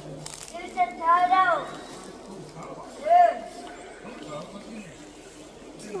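Indistinct voice sounds: two short pitched calls, one about a second in and one about three seconds in, over a steady background hiss.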